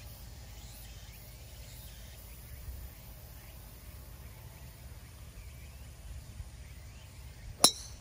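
A golf driver strikes a teed-up ball with one sharp crack near the end, over faint outdoor background noise.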